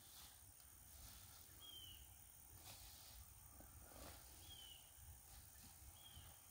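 Near silence, broken by a faint short falling chirp from a bird, repeated about every three seconds.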